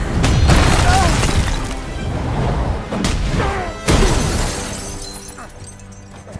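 Film fight sound effects over the score: three heavy impacts, each with a deep boom and a crashing, shattering tail. The first comes just after the start and the other two about three and four seconds in, before the sound dies away.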